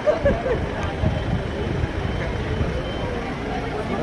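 A convoy of vehicles passing along the street, a steady low rumble, with crowd chatter and a few nearby voices over it, loudest in the first half-second.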